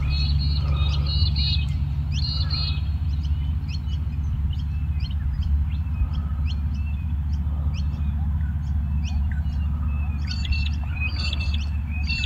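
Small birds chirping: short high notes repeated in quick clusters, sparser in the middle, over a steady low rumble.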